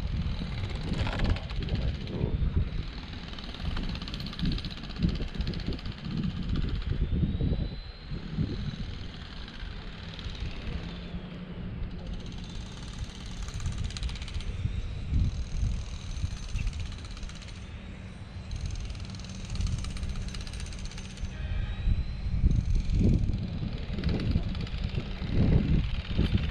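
Wind buffeting an action camera's microphone outdoors on the water, an uneven low rumble that comes and goes in gusts, with faint high chirping sounds over it.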